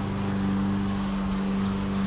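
A steady, low-pitched mechanical hum that holds the same pitch throughout.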